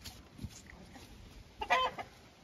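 A chicken gives one short cluck about one and a half seconds in, over quiet background.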